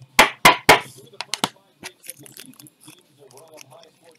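Rigid clear plastic toploader card holders clacking as they are handled: three sharp clacks in quick succession, then a couple of lighter clicks.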